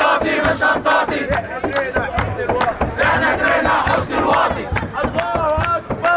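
A large crowd of protesters chanting slogans together, loud and continuous, with many voices overlapping.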